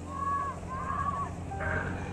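A few short, arching bird calls over a steady low hum.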